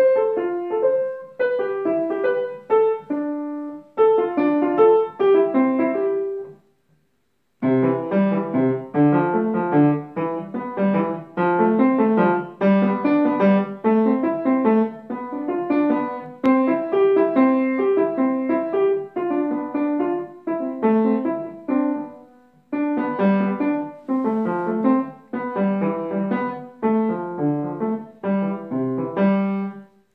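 Acoustic grand piano played by a young child practising a simple piece in short phrases. There is a brief pause about a quarter of the way in, after which lower notes join the melody, and the playing stops right at the end.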